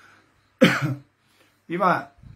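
A man clears his throat once, a short sharp burst about half a second in, before going on speaking.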